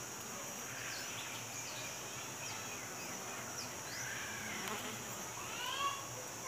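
Honeybee colony humming steadily inside a hollow cavity, with a few short chirping calls near the end.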